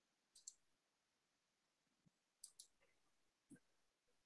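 Near silence with a few faint computer mouse clicks, two of them in quick succession about two and a half seconds in.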